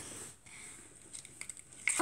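Faint handling noises, soft squishes and a few small clicks, as homemade slime is taken from a clear plastic container and handled to test whether it is sticky.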